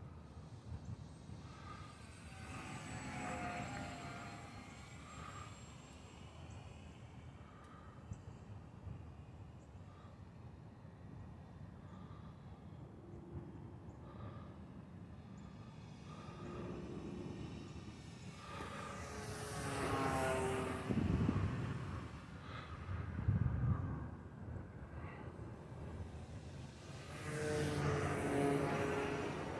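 Electric RC plane's brushless motor and propeller buzzing as the HobbyZone Carbon Cub S+ flies around overhead, swelling and fading with its pitch bending up and down as it passes, loudest about two-thirds of the way through.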